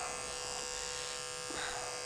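Electric pet-grooming clipper with a #30 blade, running with a steady buzz as it cuts matted fur out from between a dog's paw pads.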